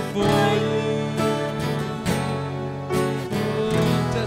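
Live worship band playing an instrumental passage: acoustic guitar strumming chords over held, sustained accompaniment, with no singing.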